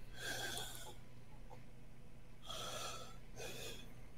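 A man's breathy, wheezing laughter into a headset microphone, in short bursts: one at the start and two more in the second half.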